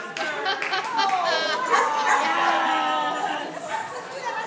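A dog whining and yipping in high, drawn-out cries that fall in pitch.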